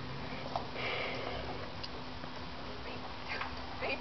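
A short breathy hiss about a second in, with faint scuffling, from meerkats unhappy at being caught in a pen. A steady low hum runs underneath.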